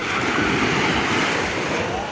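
Small sea waves breaking and washing up the sand at the shoreline, the rush swelling through the middle and easing near the end, with some wind on the microphone.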